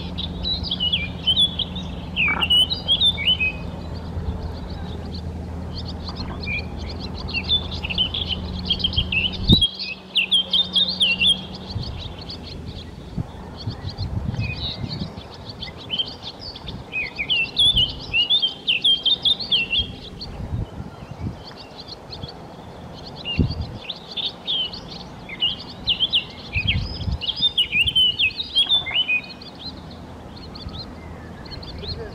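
Common merganser (goosander) ducklings peeping: a dense chatter of short, high chirps in quick clusters with brief pauses. A low steady hum underneath stops abruptly about a third of the way in.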